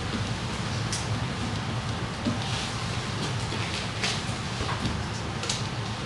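Classroom room tone: a steady low hum with a few short, soft rustles or hisses scattered through it.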